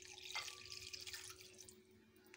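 Water poured from a small glass into a bowl of oil and sauces: a splashing trickle that starts suddenly and tapers off near the end.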